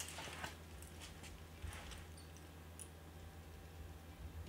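Faint clicks and light handling noise from a jointed swimbait being turned in the hands, over a steady low hum.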